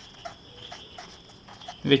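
Felt-tip pen writing on paper: a run of short, faint scratchy strokes, with a faint steady high-pitched tone behind them.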